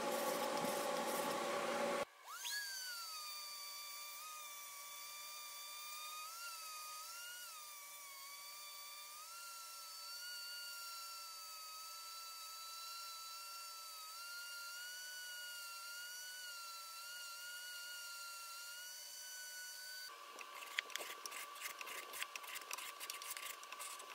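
A random orbital sander with a vacuum hose attached runs with a high whine whose pitch wavers as it is pressed into a painted wooden leg, sanding off latex paint. It starts about two seconds in and stops about twenty seconds in. Before and after it there is rapid hand scraping of paint from wood.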